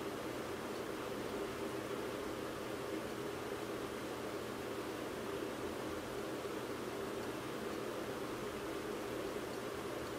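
Steady low hiss with a faint hum: room tone, with no distinct handling sounds.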